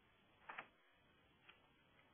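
Near silence broken by faint clicks: a quick double click about half a second in, and a single fainter click about a second later.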